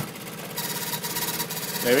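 A machine running steadily with a fast, fine buzzing rhythm and a faint steady tone.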